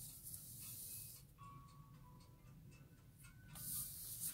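Sheets of drawing paper sliding and rustling under a hand on a desk, a soft hiss in the first second and again near the end.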